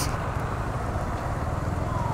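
Motorcycle engine running steadily at low speed in slow traffic, a continuous low rumble with road and traffic noise around it.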